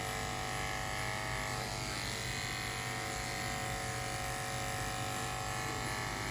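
Corded electric dog-grooming clipper with a No. 7 blade running with a steady hum as it is worked against the grain of the coat on the dog's neck.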